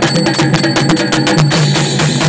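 Live folk music accompanying a masked dance: fast, dense drumming with metallic clanging percussion over a sustained melody line.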